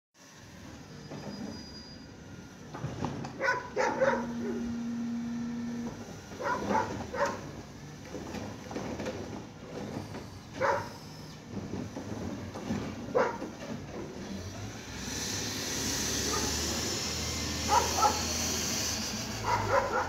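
A dog barking in short bouts every few seconds. From about fifteen seconds in, a side-loader garbage truck's engine and a rising hiss grow louder as the truck draws near.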